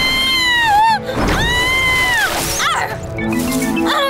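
Cartoon monkey calls over background music: two long, high screeches, each dropping in pitch at the end, then a short burst of quick squeaks.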